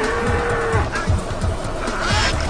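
Animated combine harvester giving one long, bull-like mooing bellow that rises and falls in pitch, over low rumbling and thumps as it charges.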